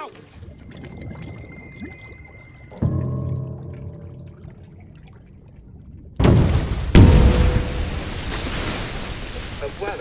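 A low droning music chord swells in about three seconds in. Then, about six seconds in, a sudden loud rush of water, a heavy splash a second later and churning, bubbling water follow as a man's head is forced under the water of a bathtub.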